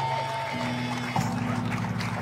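Amplified guitar rig on stage: a held tone fades out in the first half-second, then a steady electrical buzzing hum through the PA sets in. A sharp click comes a little after a second in.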